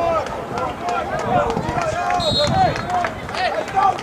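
Several people shouting and calling out, words indistinct, with a short high whistle blast a little over halfway through: a referee's whistle blowing the play dead.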